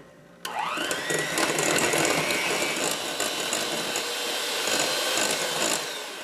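Electric hand mixer switched on, its motor whine rising as it spins up and then running steadily as the beaters churn creamed butter, sugar and mashed banana in a glass bowl.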